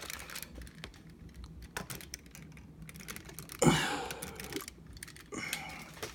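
Plastic action figures being handled and moved on a wooden tabletop: scattered light clicks and taps, with a louder bump about three and a half seconds in.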